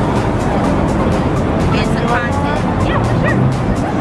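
Busy city street noise with a few short, high yelps near the middle.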